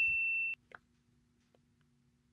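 A single high, steady bell-like beep tone that cuts off suddenly about half a second in, followed by a faint click and then near silence.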